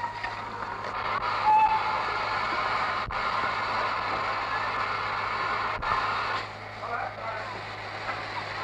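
Steam locomotive whistle ending a blast at the very start, with a brief second toot about a second and a half in, followed by a steady hiss of escaping steam for several seconds that stops about six and a half seconds in.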